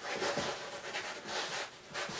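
Hands pushing and rubbing dry play sand across the bottom of a plastic sand tray, a soft, uneven scraping.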